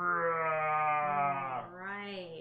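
A person's long, drawn-out vocal sound: one held, wavering note of about one and a half seconds that sags slightly in pitch, then a shorter one near the end.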